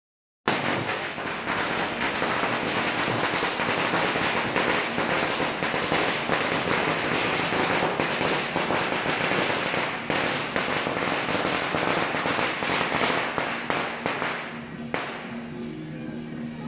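A long string of firecrackers going off in a dense, continuous crackle. It starts about half a second in and dies away near the end.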